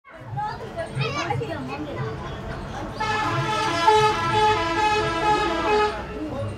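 People's voices, then from about three seconds in a loud held tone rich in overtones that steps between a few pitches for about three seconds.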